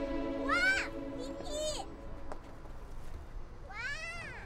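A young girl giving short, high-pitched excited squeals, three times, about half a second in, a second later, and near the end, over film score music holding steady sustained chords.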